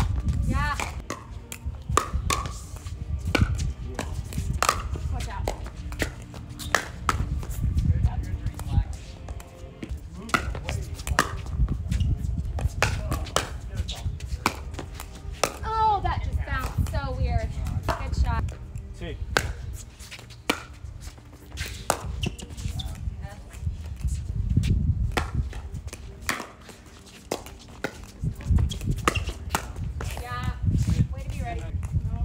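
Pickleball paddles striking a plastic ball: many sharp pops at irregular intervals as rallies are played, over a steady low rumble.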